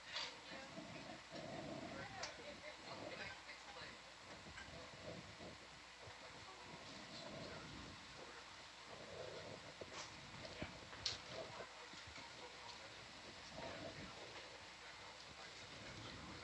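Faint, indistinct voices of the ROV control-room team over a quiet background, with a few sharp clicks.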